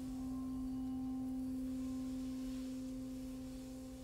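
A held musical tone around middle C, pure and steady with faint overtones above it, slowly fading near the end.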